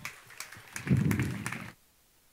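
Scattered knocks and low thuds of a clear acrylic lectern being handled and moved on a stage beside a microphone. The sound cuts off suddenly near the end.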